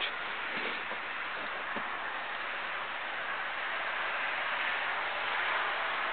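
Steady background hiss with no horn sounding: outdoor ambience, no tone or blast.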